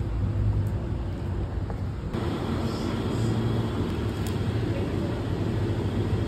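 A steady low mechanical hum over a background of noise, with a change in the background about two seconds in.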